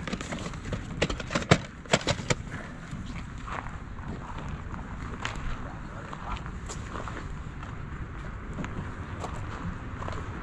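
Plastic VHS tape cases clacking against each other as a hand flips through them in a cardboard box: a handful of sharp knocks in the first couple of seconds. After that, steady outdoor background noise with a few faint ticks.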